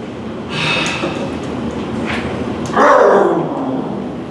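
A performer's voice imitating a lawn mower that won't start: a rasping burst about half a second in, then a loud sputter that falls in pitch around three seconds in.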